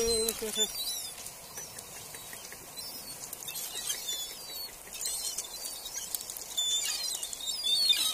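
A crowd of gulls squabbling over food: many short, high squealing calls, with wings flapping and clicks from the pebbles under them.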